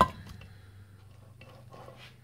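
A sharp click as the gearbox shaft and its gear cluster are pressed down into the aluminium lower crankcase half of a Suzuki T250 engine. A few faint light clicks follow as the parts are handled.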